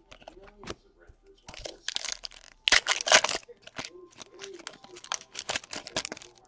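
Plastic card-pack wrapper being torn open and crinkled in two noisy bursts, about a second and a half and three seconds in, the second the loudest. Light clicks of cards being handled follow.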